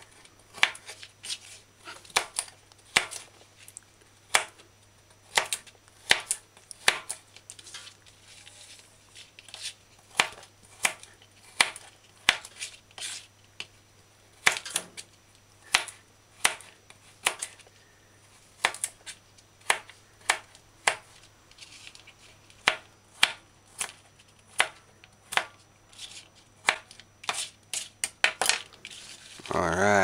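Kitchen knife chopping hard coconut meat into small dice on a plastic cutting board: a long run of sharp knocks, unevenly spaced, about one to two a second.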